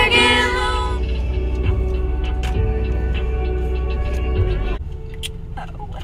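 Music playing over a car stereo with a strong bass, a girl's voice singing along in the first second; the music drops much quieter about five seconds in.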